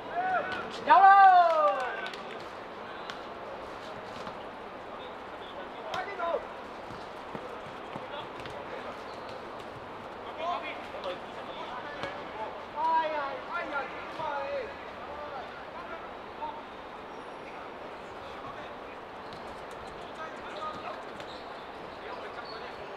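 Players shouting to each other during a football match: one loud call about a second in, then shorter calls around six seconds and again between ten and fifteen seconds, over steady background noise.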